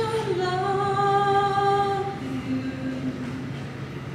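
A woman's solo voice singing a cappella, with no accompaniment. She holds one long note that dips slightly at its start, then moves to a lower note about two seconds in, which trails off near the end.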